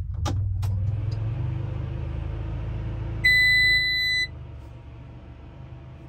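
Ignition key switch on a Cat D1 dozer clicking over twice as the key is turned, then the machine's electrics powering up with a single loud electronic beep lasting about a second, about three seconds in. A steady low engine rumble runs underneath.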